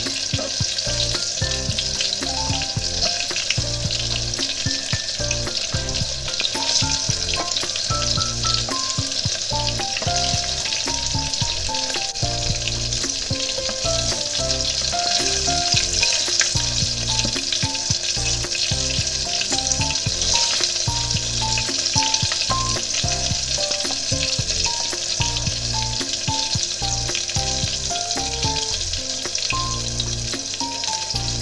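Starch-coated soy-meat pieces deep-frying in rapeseed and sesame oil in a small pot: a steady crackling sizzle with many small pops. Chopsticks turn the pieces in the oil now and then.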